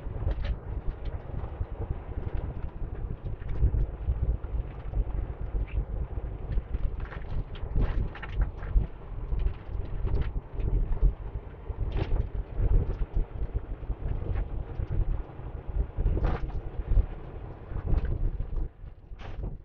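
Steady low rumble of a semi-truck in motion, heard from inside the cab: engine and road noise, with scattered small clicks and knocks.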